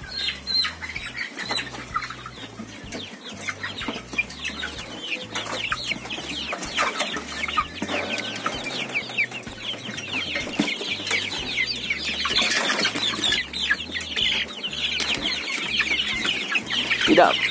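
A flock of young white cockerels crowded in a cage, giving many short, falling squawks and clucks, with wing flapping as birds are grabbed by hand.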